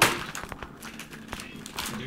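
A sharp knock or snap at the very start, then light crinkling and small clicks of a thin clear plastic wrapper being handled on a wooden table.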